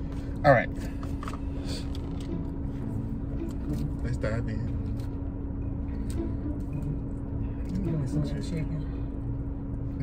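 Steady low hum of a car interior, with light clicks of plastic forks against a plastic salad container as people eat. A short vocal sound about half a second in is the loudest moment.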